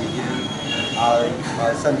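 A man speaking, with a thin, high-pitched squeal behind the voice for about a second in the first half.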